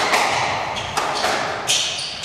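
Squash rally: the ball is struck and smacks off the court walls, with three sharp knocks and short squeaks of court shoes on the hardwood floor.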